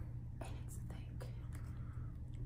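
Faint crinkling and ticks of spicy-noodle sauce sachets being torn open and squeezed out, over a steady low hum.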